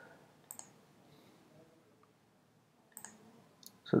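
A few sparse computer mouse clicks: one about half a second in and two or three more near the end, over quiet room tone.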